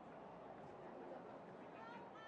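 Faint, distant voices of players and spectators at a rugby match, with a high-pitched shout rising near the end.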